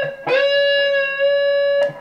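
Clean electric guitar, Telecaster-style: a single high note, about a C sharp, picked about a quarter second in. It is pulled up into pitch and held steady for about a second and a half, then cut off. It is part of a demonstration of hitting a pitch and controlling vibrato with the fretting fingers.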